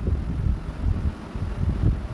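Low, uneven rumbling background noise with no clear pitch or rhythm.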